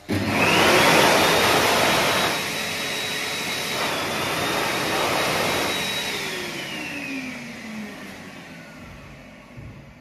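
Kuaierte K2009B (Heatstore Tornado Select) hot-air hand dryer switching on at the sensor: a loud rush of air with a motor whine that climbs in pitch over the first second and holds steady. About six seconds in it cuts out, and the whine falls in pitch as the motor winds down and fades.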